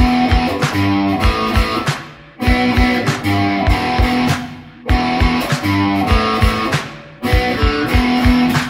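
Gibson Les Paul electric guitar playing a rock and roll chord riff, the same phrase repeated about every two and a half seconds with a short break between repeats.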